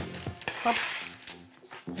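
A brief rustling scrape, about half a second in, as a tray lined with baking paper and spread white chocolate is picked up off the worktop.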